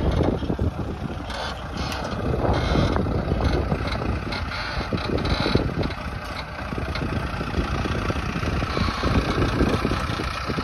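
Farm tractor's diesel engine running steadily under load, driving a rear-mounted rotavator that churns weeds into the soil.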